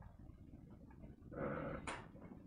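Faint room tone, then a brief murmured vocal sound from a person about a second and a half in, ending in a sharp click.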